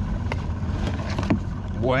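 A few light knocks as a mud crab is handled against a metal crab gauge in a plastic tub, over a steady low rumble; speech starts right at the end.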